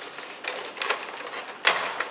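Plastic retaining clips of an iRobot Roomba's top cover (faceplate) clicking as the cover is pried loose by hand: a few separate clicks, the loudest near the end.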